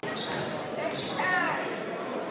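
Crowd murmur in a large school gym during a stoppage in play, with a brief high-pitched sound rising out of it about a second in.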